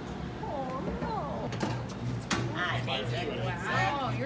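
Untranscribed voices chatting over background music, whose regular low beat becomes clear about halfway through.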